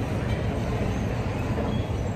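Steady low rumble of city background noise, with no distinct event standing out.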